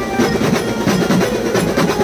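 Live Mumbai beats band playing a fast, even drum beat under sustained melody tones.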